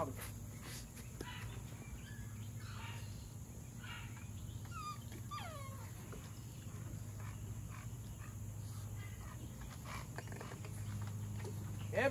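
Faint whining from an American Bully dog: a few short, falling whines in the middle, over a steady low hum.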